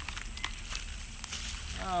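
Steady high-pitched drone of summer insects, with a few faint clicks and rustles from handling near the water.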